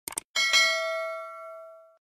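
Two quick click sound effects, then a bell-like ding struck twice in quick succession that rings on and fades over about a second and a half: the stock sound of a YouTube subscribe button being clicked and its notification bell rung.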